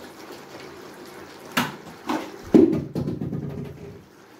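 Close, wet mouth sounds of eating soft boiled yam in sauce by hand. There are sharp smacks about one and a half and two seconds in, then a louder stretch of chewing in the second half.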